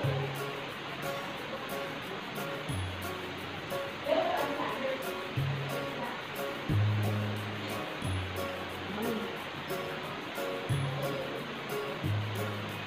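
Background pop music with a bass line of held notes about a second long and a short repeating melody above it.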